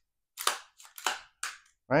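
Smith & Wesson M&P 15 Sport II AR-15's action being worked by hand: about four sharp metallic clacks in a second and a half as the bolt is drawn back and locked open.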